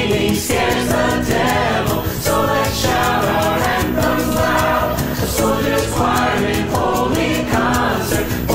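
Mixed choir of men and women singing a worship song together.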